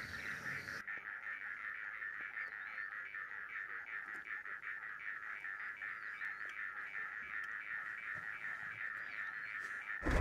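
A steady, rapidly pulsing chorus of calling animals, with a few faint bird chirps over it.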